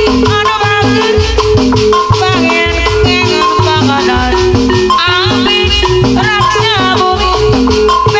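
Live Sundanese jaipong music: gamelan metallophones playing a repeating figure over kendang drum strokes, with a melody line that slides up and down in pitch.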